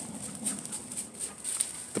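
Faint sounds from a German Shepherd.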